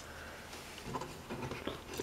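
Faint handling sounds of a plastic action figure: a few light clicks and rubs as its leg and foot joints are rotated into place, over a low room hum.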